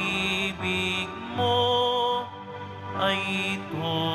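A slow church hymn, most likely a Communion hymn, sung in long held, wavering notes over steady low accompaniment, in short phrases with a brief break a little past the middle.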